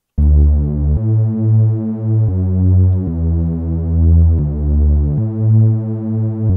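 Xfer Serum software-synth bass patch playing a line of long, low notes, about one note a second with no gaps. The patch is a default saw wave in four detuned unison voices through a 12 dB low-pass filter with drive, heard without its sidechain.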